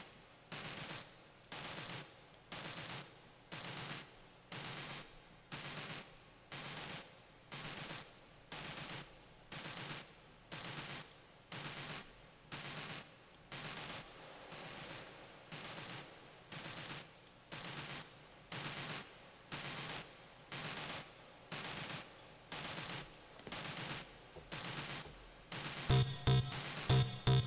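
A looped electronic pattern from a Maschine MK3 groove: short hissy noise hits repeating evenly, about one and a half a second, each with a low tone under it.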